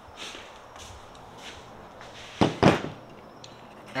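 A few soft footsteps, then two loud, sharp clunks about a quarter-second apart as a metal brake caliper bracket is set down on a plastic folding table.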